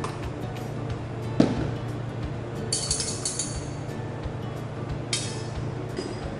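Metal clinks and knocks as kettles are handled: a sharp knock about one and a half seconds in, a cluster of bright clinks around the middle, and another hit near the end, over steady background music.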